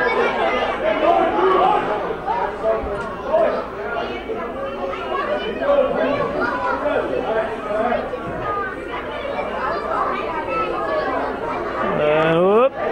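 Crowd chatter: many voices talking over one another at once, with no single clear speaker, in the echo of an indoor pool hall.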